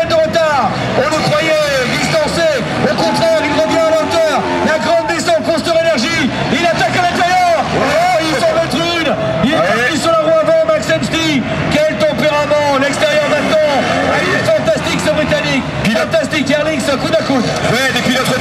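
Motocross bike engines revving up and down on the track, mixed with a commentator's voice and crowd chatter.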